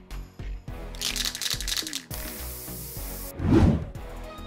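Background music with hisses of an aerosol hairspray can: a short one about a second in, then one lasting about a second that cuts off abruptly. A short loud burst of noise follows near the end.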